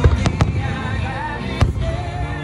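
Aerial firework shells bursting overhead: four sharp bangs, three close together in the first half second and one more past the middle, over loud music playing throughout.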